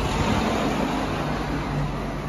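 A car passing close by, its tyre noise and engine loudest in the first second and then easing slightly.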